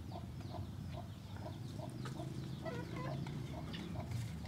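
A chicken clucking faintly and steadily, with a short cluck about three times a second.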